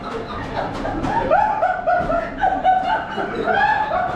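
A person giggling: a run of short, high-pitched laughs.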